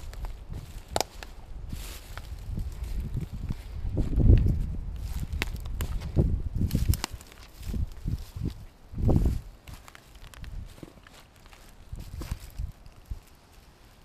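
Footsteps crunching through dry grass and dead twigs on a scrubby woodland floor, with brush rustling and twigs cracking, and a couple of heavier thuds about four and nine seconds in.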